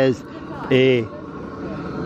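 Speech: a man's voice speaking two slow, drawn-out words, over a steady low outdoor background noise.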